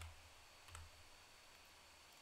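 Near silence: faint room tone with one soft, sharp click about three-quarters of a second in.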